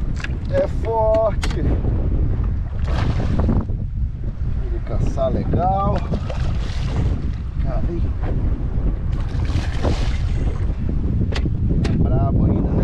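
Wind rumbling on the microphone, with a man's short calls twice and bursts of water splashing as a hooked snook thrashes at the surface beside the boat.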